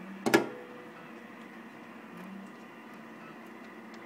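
A single sharp click about a third of a second in as the CB transmitter is keyed into the four-pill base amplifier, then a steady low hiss while it stays keyed.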